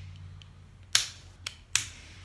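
Three sharp clicks, two loud ones with a fainter one between, starting about a second in: a locking ring being snapped back into the housing of a paintball marker's lower receiver.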